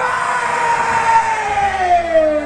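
Live rock band stopping dead, leaving a single held amplified electric guitar tone that slides slowly and smoothly down in pitch, like a siren winding down.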